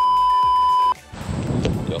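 A steady television test-card tone, the single pitched beep that goes with colour bars, held for about a second and cutting off sharply. It is followed by a rushing noise until a man's voice starts at the very end.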